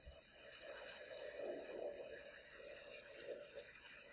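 Soft, steady hiss of falling rain.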